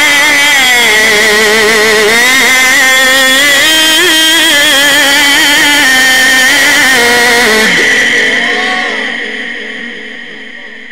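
A male Quran reciter chanting in the ornate mujawwad style, holding one long melismatic phrase with a wavering vibrato into the microphone. About 8 seconds in, the phrase ends and the voice fades away.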